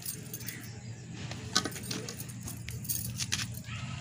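A few light, sharp clicks and ticks over a low steady hum.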